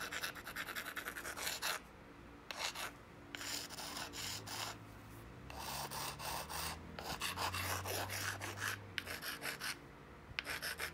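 An abrading stone rubbed back and forth along the edge of an obsidian knife blade, a dry scraping in several bouts of quick strokes with short pauses between. The edge is being ground down to even it out before the high points are pressure flaked off.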